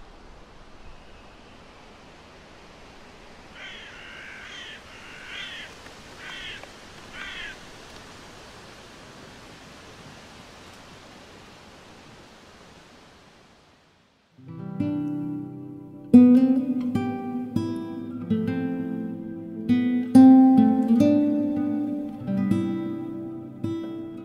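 Faint outdoor woodland ambience, a steady hiss with a few short bird calls. Just past halfway a slow guitar and cello piece begins: plucked nylon-string classical guitar notes over sustained low cello lines.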